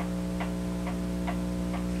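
A clock ticking steadily, a little over two ticks a second, over a constant electrical hum.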